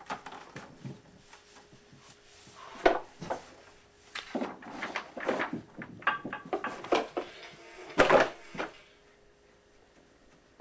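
Clatter of a child's plastic toys being handled: a sharp knock about three seconds in, a busy run of clicks and rattles over the next few seconds, and another loud knock about eight seconds in.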